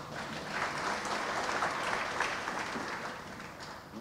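An assembly applauding, many hands clapping at once; the clapping dies away near the end.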